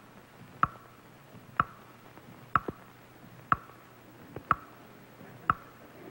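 Stunt clock ticking once a second with sharp, even ticks, counting down the 55 seconds allowed for the stunt.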